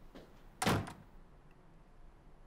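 A door shutting with a single thud about two-thirds of a second in, then a quiet room.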